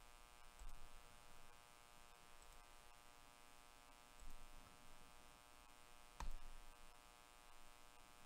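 Near silence with a faint steady electrical hum, and one faint click about six seconds in.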